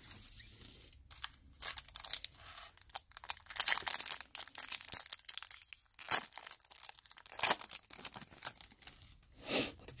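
Foil wrapper of a trading-card pack being torn open and crinkled by hand: a run of irregular crackles and rips with short pauses.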